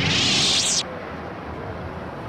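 Lightsaber sound effect: a loud, hissing whoosh with a sweeping pitch as the blade switches off, cutting off abruptly under a second in.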